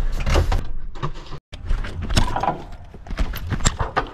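A series of knocks and clatters from a lorry cab door and fittings, over the low rumble of the truck's idling engine, broken by a sudden cut to silence about a second and a half in. After it, scattered knocks and rattles of gloved hands working a curtain-side trailer's strap.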